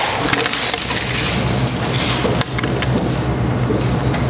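A bottle smashed over a man's head: a sharp crash as it shatters and sprays water, followed by a stretch of crackling and tinkling as fragments scatter.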